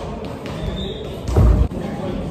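A heavy, dull thud about one and a half seconds in as bodies hit the padded ring mat during a wrestling scuffle, with faint voices under it.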